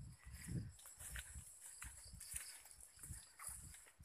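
Footsteps walking over grass and soft ground, irregular low thumps with rustling from the handheld camera.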